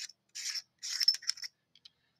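Turret cap of a low power variable riflescope being unscrewed by hand: a few short scraping rubs of the cap on its threads, with light clicks among them.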